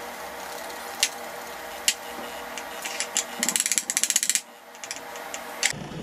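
Parmesan being grated with a stainless steel cone grater: a couple of sharp knocks, then a fast run of short scraping strokes for about a second, halfway through.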